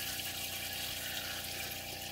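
Water running steadily at a galley sink, with a low steady hum underneath.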